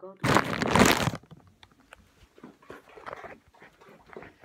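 Close rustling and rubbing on a phone's microphone as the phone is handled and its lens covered, lasting about a second. Faint scattered clicks follow.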